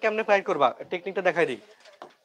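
A man speaking, the words unclear, stopping about one and a half seconds in.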